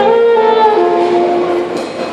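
Saxophone with electric keyboard accompaniment playing a slow melody: held notes stepping down in pitch, fading near the end.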